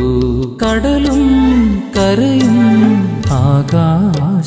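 Christian devotional song with a male voice singing long, ornamented, sliding phrases over an instrumental backing with a steady bass.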